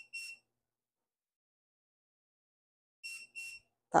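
Oven beeping: two short high electronic beeps at the start and another two about three seconds later, the oven signalling that it has reached temperature.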